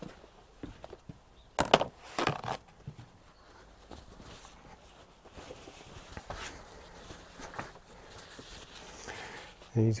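Scattered light clicks and knocks, with a louder clatter about two seconds in. A man's voice begins at the very end.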